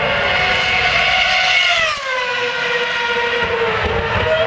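Ferrari F10 Formula 1 car's high-revving 2.4-litre V8 engine running at high revs as the car passes. Its shrill note drops sharply in pitch about halfway through, then carries on at a lower pitch.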